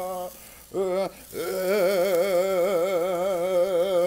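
A man's deep voice singing long wordless notes with a wide vibrato: one note breaks off just after the start, a short rising note follows about a second in, then a long held note runs to the end.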